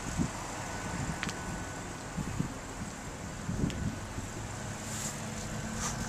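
Steady outdoor background noise with a low wind rumble on the microphone, broken by a few soft low thumps and a couple of faint ticks.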